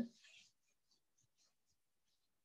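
Very faint rubbing of a board duster wiping chalk off a chalkboard, a quick series of short strokes.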